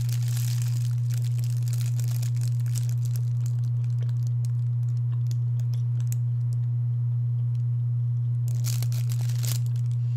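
Thin plastic bag crinkling around a bread-like donut as it is bitten and chewed, with scattered light rustles and a denser burst of crinkling near the end. A steady low hum sits underneath.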